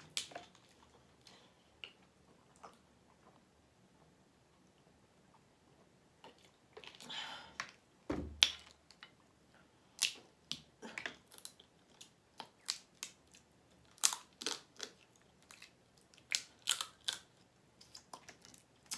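Crawfish shells being cracked and peeled by hand: sharp crackles and clicks, coming thick from about ten seconds in, with a single thump a little before.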